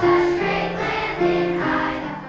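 Children's choir singing with piano accompaniment, in held notes that change about every half second.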